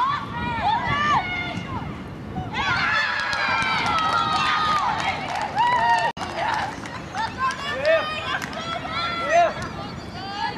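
Women's voices cheering, screaming and shouting together in celebration of a goal just scored, with a long drawn-out cry about three seconds in. The sound drops out for an instant about six seconds in.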